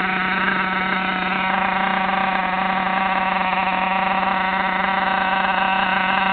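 Small nitro engine of an RC monster truck idling at a steady, fairly high pitch. It keeps running without a break even though the call has just gone out to kill it.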